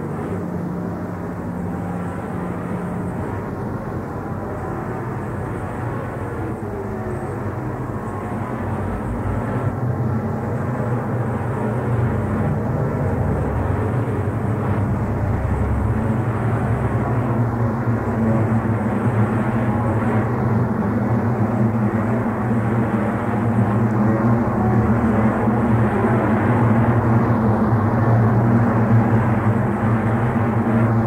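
Drone music: layered low sustained tones under a dense rumbling haze, with a few slow pitch glides early on, growing gradually louder.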